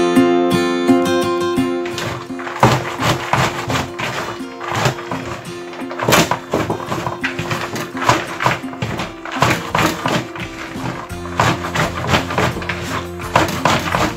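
Background music: held notes under a busy, irregular run of sharp beats.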